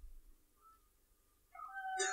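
Near silence in a short pause between spoken phrases, with a faint brief tone about half a second in and a few more faint tones just before the voice comes back.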